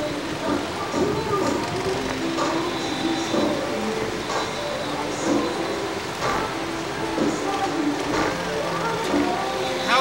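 Background music playing, a melody of held notes, with indistinct voices over it.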